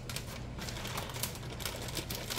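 Plastic gallon zip-top freezer bag being zipped shut: a run of small irregular clicks and crinkles as fingers press along the seal.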